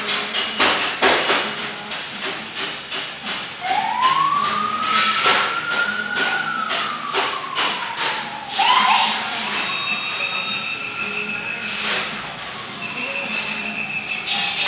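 Ambulance siren passing in a slow wail: one long rise and fall in pitch, a quick warble about nine seconds in, then a second gentler rise and fall. Under it is street traffic noise, with a rapid run of sharp clicks in the first half and a steady high tone near the end.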